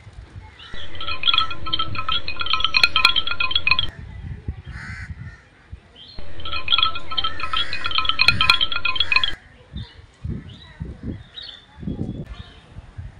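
A short high electronic tune, like a ringtone, played twice: each time about three seconds long, cutting in and out abruptly, the second a repeat of the first.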